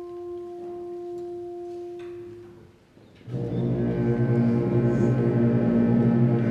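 High school concert band: a single held note fades out over about two seconds, then after a moment of near quiet the full band comes in about three seconds in on a loud, low, sustained chord carried by the tubas and low brass.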